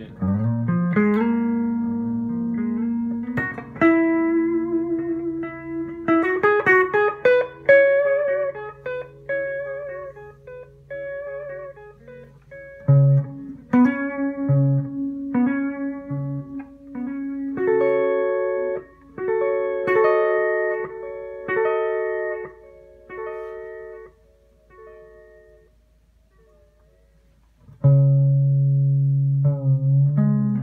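Electric guitar played through a Line 6 M5 Stompbox Modeler on its Digital Delay with Mod preset, into a Carvin Legacy 3 amp, with the modulation speed turned up. Chords and single notes ring with repeating echoes and a wavering pitch, almost like a detune. The playing dies away near the end, then a new chord is struck.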